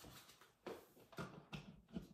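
A few soft, short knocks and shuffles, about half a second apart, in a quiet room.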